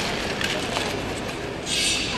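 Short track speed skating blades scraping and hissing across the ice, with a louder, sharp scrape near the end, over steady arena noise.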